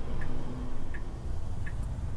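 Turn-signal indicator ticking inside a Tesla Model 3's cabin: three small ticks a little under a second apart, over low road rumble as the car turns.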